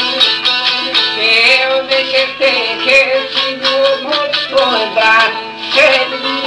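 Albanian folk song: a voice singing long, wavering held notes over a plucked çifteli, the two-string long-necked lute.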